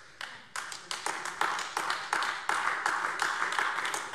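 Applause: a group of people clapping, the claps building over the first second and carrying on steadily.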